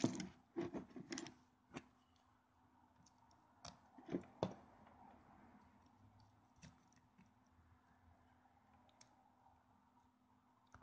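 A phone being set down on a wooden desk: a quick run of handling knocks and clicks in the first second, then a few sharp clicks around four seconds in. After that, near silence with a faint steady hum.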